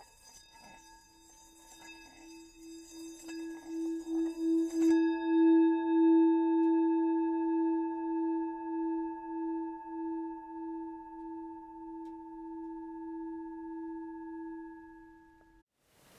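Intro music: one sustained ringing tone that swells over the first few seconds, pulses slowly in loudness, and fades out near the end. Faint high sparkling chimes sound over it in the first five seconds.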